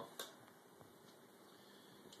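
Near silence: room tone, with a single short click just after the start.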